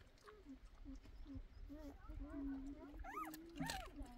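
Puppies whimpering in a run of short, squeaky calls, with a louder rising-and-falling whine a little after three seconds in. A few sharp crunches near the end come from the mother dog chewing chicken bones.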